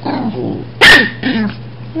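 A dog barks once, sharply, about a second in, with softer growly vocal sounds just after it, during rough play between dogs.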